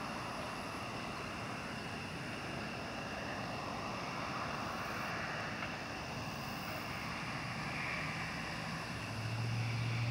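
Steady outdoor background noise: an even, low-level rush with a faint steady high buzz over it, and a low hum that comes in near the end.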